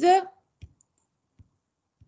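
The end of a spoken word, then three faint, short clicks of a computer mouse spaced through an otherwise quiet pause.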